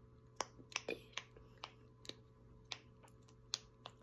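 Silicone pop-it bracelet fidget being pressed, its bubbles popping with small sharp clicks, about seven of them at an uneven pace.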